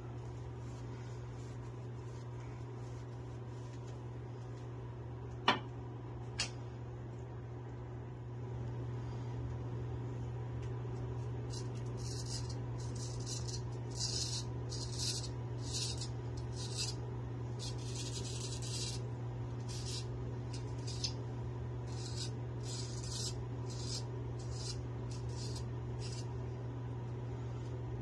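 Naked Armor Erec straight razor scraping through lathered stubble on the neck in a run of short strokes, starting about twelve seconds in, over a steady low hum. Two sharp clicks come earlier, around five and six seconds in.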